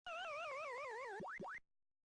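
Electronic end-card sound effect: a warbling synthesized tone that wobbles quickly while slowly sinking in pitch for about a second, then two quick rising 'boing' swoops, cutting off abruptly about a second and a half in.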